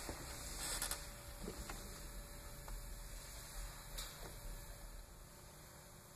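A pause in the music holds only a faint steady electrical hum, with a few soft clicks and creaks scattered through it.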